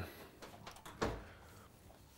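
A lidded cast iron pot being handled on a stone counter: a few faint clicks and one dull knock about a second in.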